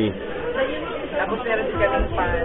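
Indistinct chatter of several voices in a busy shopping mall.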